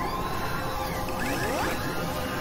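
Electronic intro theme for an animated logo: a steady synth drone with low rumble, under rising whooshing pitch sweeps, one arching high near the start and another rising in the second half.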